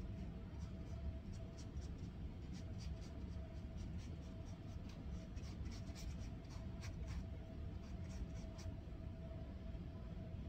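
A paintbrush dabbing and stroking paint onto a stretched canvas: a quick run of short, light scratches that stops shortly before the end, over a steady low hum.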